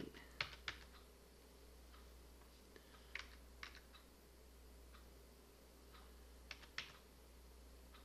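Faint computer keyboard keystrokes: a handful of sharp clicks in small pairs, about half a second in, around three seconds in and near the end, over a low steady hum.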